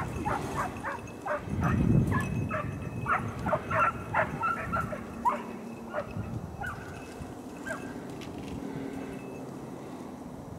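Hunting dogs barking and yipping in quick, overlapping bursts as they run a freshly flushed rabbit's trail. The barking thins out after about eight seconds, and a brief low rumble comes about two seconds in.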